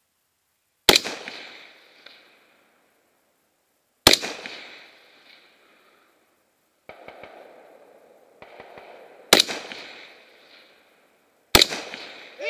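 Four rifle shots from a scoped AR-style semi-automatic rifle fired from the prone position, unevenly spaced a few seconds apart, each a sharp crack that trails off over about a second. A quieter scuffling sound comes before the third shot.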